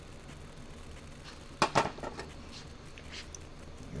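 Hand tools clinking on a rocker-arm valve adjuster: two sharp metallic clicks close together about halfway through, with a few lighter ticks around them. A wrench and screwdriver are setting the valve clearance, tightening the adjusting screw and lock nut a little.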